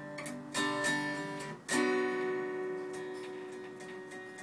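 Acoustic guitar played solo: a few strummed chords, then a louder chord a little under two seconds in that is left ringing.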